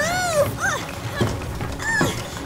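Cartoon unicorn's high whining call that rises then falls, followed at once by a shorter falling yip, over background music.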